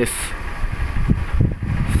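Outdoor street background noise: a steady low rumble, with a brief hiss at the very start.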